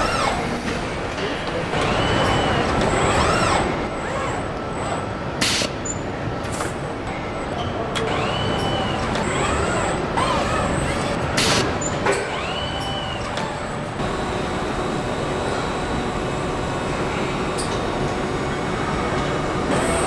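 Industrial robot arms on a car assembly line whine as their motors move, the pitch rising and falling in smooth arcs. Under the whines runs a steady factory noise, and two short sharp hisses come about six seconds apart.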